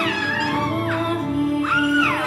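A young girl singing solo into a microphone over a backing track, holding notes and sliding up and down in pitch between them near the end.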